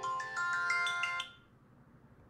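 A timer alarm playing a quick melody of chiming notes, which cuts off abruptly about a second and a quarter in. It signals that the one-minute timing is up.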